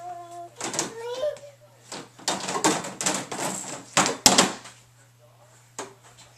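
A toddler's short babbled call, then a run of rattling and clattering as plastic toys and storage bins are handled, with a sharp knock about four seconds in.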